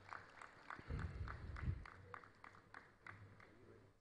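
Thin, scattered clapping from the audience, about four claps a second, fading out near the end. A low rumble about a second in.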